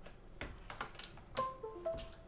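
A few small clicks and scrapes as an HDMI plug is pushed into a laptop's port, then, about one and a half seconds in, a short electronic chime of a few quick notes.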